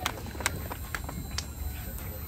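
A few scattered hand claps from the audience, about one every half second, thinning out, over a low steady hum.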